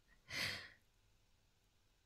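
A woman's single soft, breathy sigh, about half a second long, near the start.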